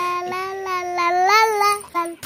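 A baby's long sung 'aaah' on one held note, rising a little past the middle and breaking off just before the two seconds are up.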